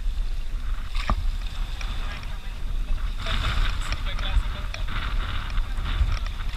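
Wind rumbling steadily on an action camera's microphone at the seashore, with a single click about a second in and faint voices in the background midway.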